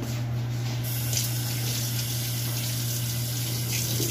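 Water running from a tap into a stainless-steel sink, starting about a second in, over a steady low hum.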